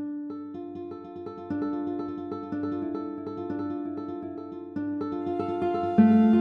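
Classical guitar playing a steady run of plucked notes, each ringing on and fading, re-struck about twice a second. It gets louder near the end.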